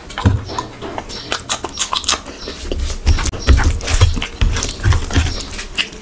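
Close-miked chewing of rice and curry eaten by hand: wet lip smacks and clicks, with a chewing rhythm of low thumps about twice a second in the second half.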